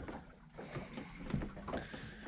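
Faint sounds of calm sea water against the hull of a small boat.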